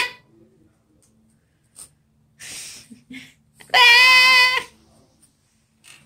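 A baby's loud, high-pitched squeal lasting about a second, a little before two-thirds of the way through, with a short breathy sound shortly before it.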